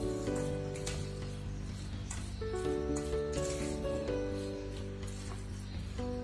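Background instrumental music of held notes that change every second or so.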